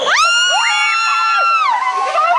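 Several riders of a swinging pirate-ship ride screaming together as the ship swings. The screams rise sharply at the start, hold for about a second and a half, then tail off near the end.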